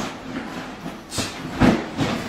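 Clothes and a black duffel bag rustling as they are stuffed and handled: a few short swishes, the loudest about a second and a half in.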